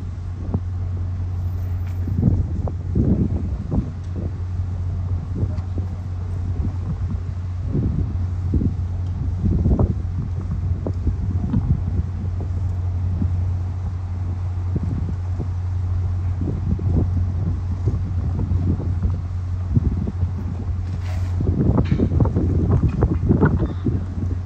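MBTA F40PH-3C diesel locomotive, an EMD 16-cylinder two-stroke, idling steadily with the train standing, a constant low drone. Irregular gusts of wind buffet the microphone throughout, heavier near the end.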